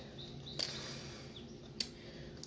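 Lettuce being cut up: two faint sharp clicks, the second one louder near the end, with a few faint high chirps between them.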